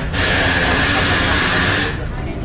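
Loud steady hiss with a high whistling tone running through it. It breaks off for a moment at the start and cuts off suddenly near the end.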